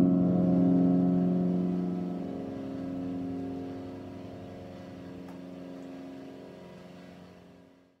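A song's final guitar chord ringing on after being struck and slowly dying away, fading to silence near the end.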